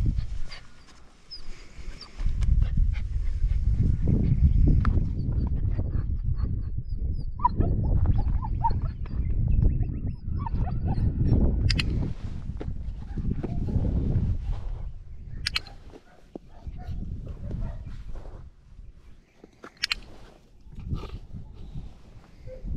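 A handheld dog-training clicker clicking three times, several seconds apart, over a loud low rumble of wind on the microphone.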